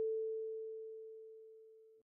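A single kalimba note, A4, ringing and slowly fading as an almost pure, steady tone. It cuts off abruptly near the end.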